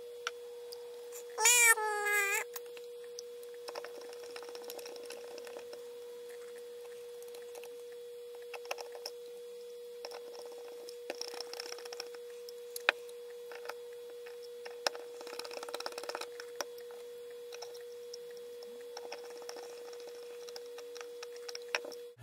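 Fast-forwarded sound of small screws being driven back into a laptop hard drive's metal caddy: faint scattered clicks over a steady single-pitch hum. A brief high, chipmunk-like sped-up voice comes about a second and a half in.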